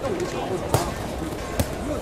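Two sharp thuds in the boxing ring, one shortly before and one shortly after the middle, over voices shouting and chattering in the arena.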